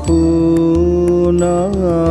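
A male voice holds one long sung note of a Rabindrasangeet song, bending in a short ornament near the end, over sustained instrumental accompaniment with light, evenly spaced percussion strokes.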